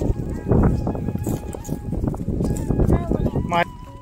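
People talking outdoors over a dense low rumbling noise, with a short rising voiced call about three and a half seconds in.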